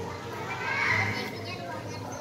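A child's high voice calling out, loudest about a second in, over a background of people talking.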